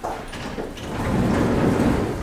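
Elevator's sliding landing and car doors opening, a rumbling slide that grows louder toward the end.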